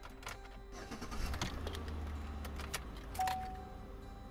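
Car cabin sound while driving: a steady low engine and road rumble with scattered light clicks and jingles. Background music with held notes comes in about three seconds in.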